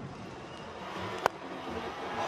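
A single sharp crack of a cricket bat hitting the ball about a second and a quarter in, a big hit, over low stadium background noise.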